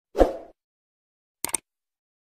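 Subscribe-button animation sound effects: a short pop about a quarter of a second in, then a quick double mouse click about a second and a half in.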